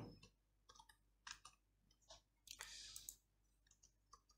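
Faint computer keyboard keystrokes: a few isolated key clicks, with a short hiss of noise lasting under a second about two and a half seconds in.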